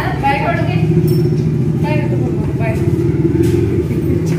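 Indistinct voices of several people talking in short snatches over a steady low rumble.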